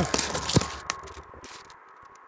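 Rustling and scraping with a few sharp clicks as someone moves through dry scrub and leaf litter close to the microphone, dying away after about a second and a half.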